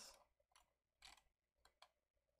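Near silence with a few faint, short computer mouse clicks, about a second in and twice near the end.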